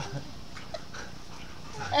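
A dog making faint sounds close by, during a quiet spell with only a few soft low noises.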